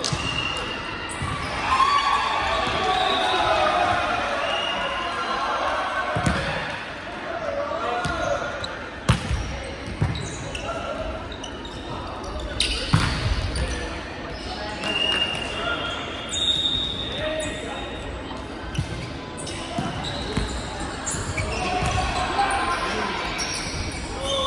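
Indoor volleyball rally in an echoing gym: players shouting calls, the ball struck sharply a few times near the middle, and short high squeaks of sneakers on the hardwood court.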